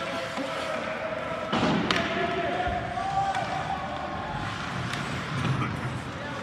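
Ice hockey game in an indoor rink: two sharp knocks from the play on the ice about a second and a half in, over spectators' voices, with one long drawn-out shout in the middle.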